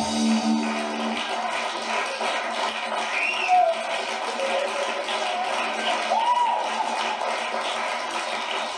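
The band's last held chord ends about a second in, then theatre audience applause and cheering carry on steadily.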